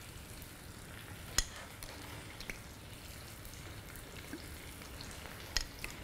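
Salmon fillet sizzling steadily in a hot frying pan, with a single sharp click about a second and a half in and a couple of faint ticks later.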